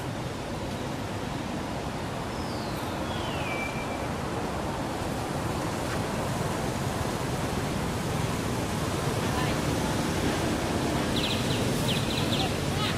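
Steady rushing outdoor background noise, growing slightly louder. A thin whistled call falls in pitch about two and a half seconds in, and a quick high chirping trill comes near the end.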